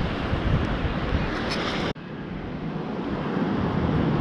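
Wind buffeting the microphone over beach surf, a steady rushing noise that cuts out suddenly about halfway through and then builds back up.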